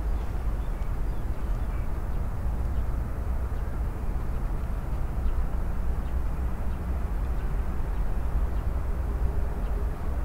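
Steady low rumble of outdoor background noise, with no distinct event standing out.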